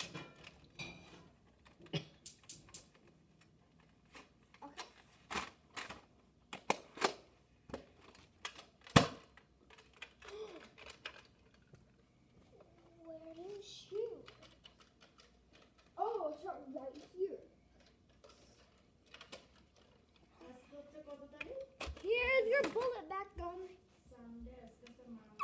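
Plastic clicks and knocks from a toy foam-dart blaster being handled, a quick irregular run of them with one louder knock about nine seconds in. A child's wordless voice follows in the second half.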